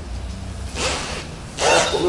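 A brief rubbing sound just under a second in, over a low steady hum.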